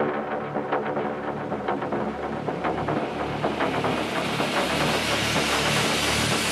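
Electronic techno music in a breakdown with little bass, short ticking percussion and pitched synth layers. A noise sweep rises and grows louder through the second half, building toward the next drop.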